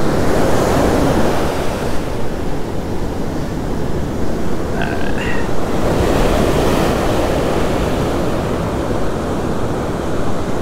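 Ocean surf breaking and washing up the beach: a steady rushing that swells near the start and again around the middle.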